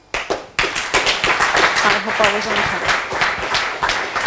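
Audience applauding: dense clapping breaks out abruptly just after the start and keeps going at a steady level.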